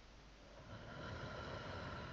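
A person's long, slow breath, audible through the call microphone, starting about half a second in and lasting about two seconds: the deep breathing of someone relaxing under a hypnotic induction.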